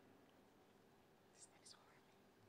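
Near silence: room tone, with two faint, very short hisses about a second and a half in.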